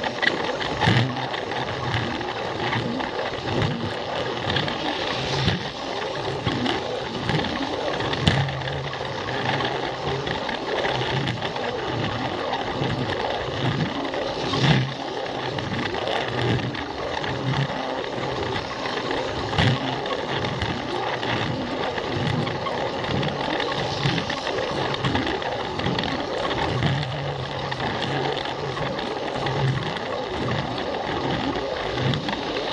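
Plarail battery-powered toy train running, its small motor and gears whirring and rattling steadily with the plastic wheels clattering over the track, and an occasional sharper click as it crosses rail joints.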